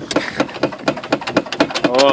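Renault 'Energy' four-cylinder petrol engine running at idle, heard as rapid, uneven ticks several times a second.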